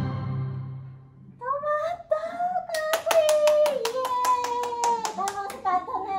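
Drawn-out vocal calls that slide down in pitch, with a quick run of hand claps, about five or six a second, for a couple of seconds mid-way. The voices are a woman and a child.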